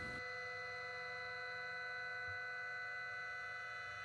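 CNC milling machine running a thread mill through aluminium under flood coolant, heard faintly as a steady whine made of several held tones over a light hiss.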